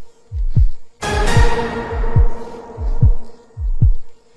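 Background music: deep bass drum hits, each dropping in pitch, about two a second, with a held chord coming in about a second in.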